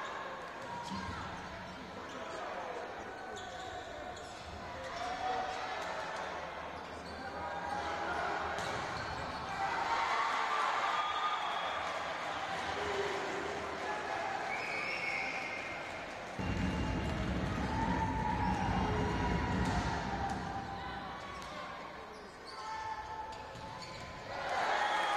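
Indoor volleyball match sound: the ball being struck again and again during rallies, over arena crowd noise and players' shouts. The crowd noise swells for several seconds past the middle.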